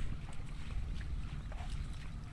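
Uneven low rumble of wind on a phone microphone outdoors, over a faint rushing hiss from swollen floodwater.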